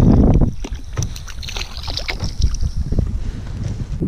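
Wind buffeting the microphone, heaviest in the first half second, over a hooked fish splashing at the water surface beside a kayak, with scattered small splashes and clicks.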